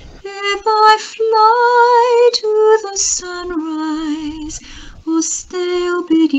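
A woman singing a slow psalm setting, with held notes carrying a clear vibrato, broken by short gaps between phrases.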